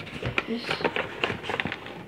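Paper flour bag being handled as flour is scooped out: a quick string of short crackles and taps.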